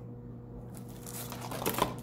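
Faint room noise, then a short burst of rustling and crinkling in the last half second as a hand rummages in a packaging bag.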